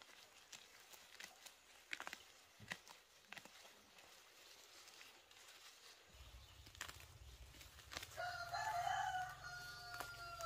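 A rooster crows near the end: one long call of about two and a half seconds. Before it, faint rustling and snapping of weeds being pulled from soil by hand.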